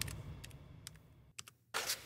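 A few faint, sharp computer mouse clicks over a low background hum, with a short stretch of dead silence a little after the middle.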